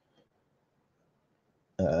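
Near silence with a couple of faint clicks early on, then a man's long, drawn-out hesitation sound, "uhh", starting near the end.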